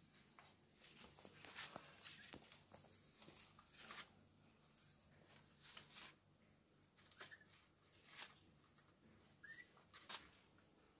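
Near silence: faint rustling scratches as newborn kittens squirm on a cloth, with one brief faint high kitten cry near the end.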